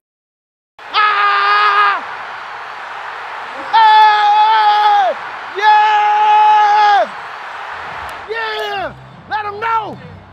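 A man shouting a long, drawn-out 'yes!' in celebration, held three times for a second or more each after a brief silent gap, then two shorter shouts that drop in pitch near the end.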